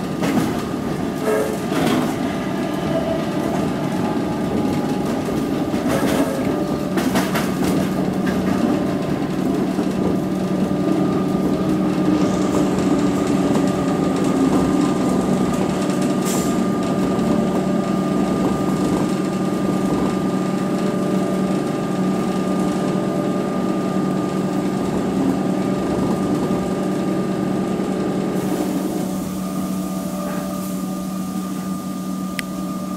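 Running noise of a suburban electric train heard from inside the carriage as it pulls into a station. Wheels click over rail joints in the first several seconds, then a steady rumble with a low hum and a higher whine carries on.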